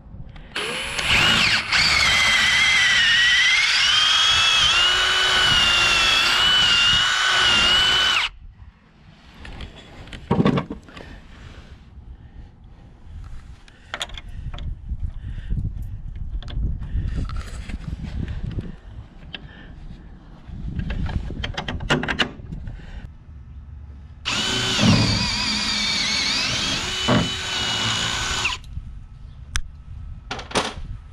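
Cordless drill boring through a steel hinge strap's bolt hole into a wooden door cross member. It runs for about seven seconds, its motor whine wavering as it loads up in the wood. Scattered knocks follow while a carriage bolt is fitted, and a second hole is drilled for about four seconds near the end.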